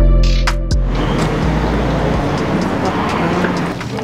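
Background music with deep bass notes and crisp hi-hat ticks, which stops about a second in and gives way to a steady rushing noise, like traffic or a passing car, with faint voices.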